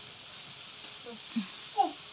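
A small child's brief vocal sounds, three or four short falling squeaks in the second second, over a steady background hiss.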